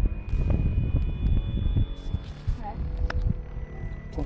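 Wind buffeting the microphone in a low rumble, with a few light knocks and clicks.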